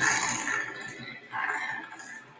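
Recorded razorbill calls: two harsh calls, the second beginning about a second and a half after the first.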